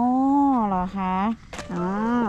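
Speech only: a woman's drawn-out exclamation in Thai ("เหรอคะ โอ...", "really? ohh"), held long vowels whose pitch rises and falls, broken briefly about a second in.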